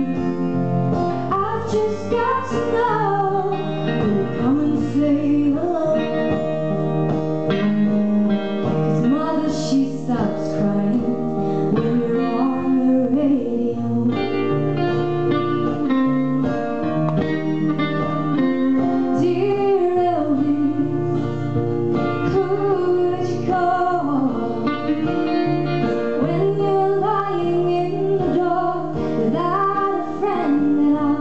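Live song played by a duo on acoustic guitar and electric guitar, with a woman singing lead in parts.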